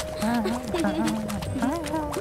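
Cartoon soundtrack: light background music with one held note under wordless cartoon vocal sounds, and a light, regular clip-clop of comic footsteps.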